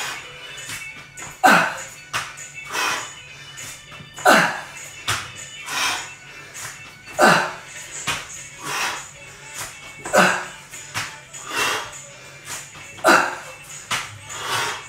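A man breathing hard through a set of burpees: a loud huff of breath falling in pitch about every second and a half, with soft knocks of hands and feet landing on a tiled floor between them.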